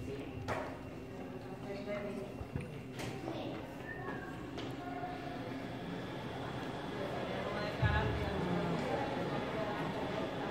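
Indistinct murmur of voices in a hall, with a few sharp knocks in the first few seconds and a brief low thump near the end, the loudest sound.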